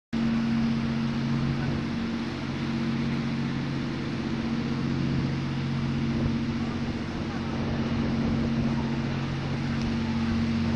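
Motorboat engine running steadily at an even pitch, with wind on the microphone.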